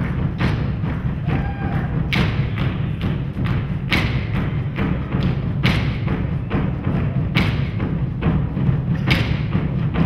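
Live percussion ensemble playing large drums: a dense, continuous pounding of deep drum beats, cut through by sharper accented strikes about every second and a half.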